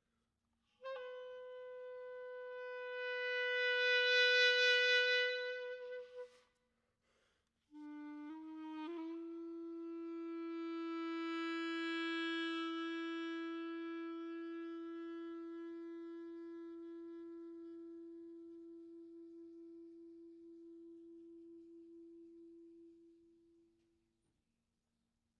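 Solo clarinet playing two long held notes. The first, higher note swells and then stops. After a short pause a lower note moves up a step and is held for about fifteen seconds, swelling and then slowly dying away to end the piece.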